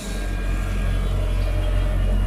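Sumitomo SH210 amphibious excavator's diesel engine running close by: a steady, loud low rumble that comes up suddenly right at the start.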